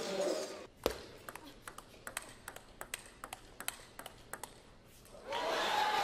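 Celluloid-style table tennis ball clicking off bats and table in a fast rally, about four hits a second, starting with one sharp louder hit at the serve. Near the end the hits stop and a broad swell of crowd noise rises.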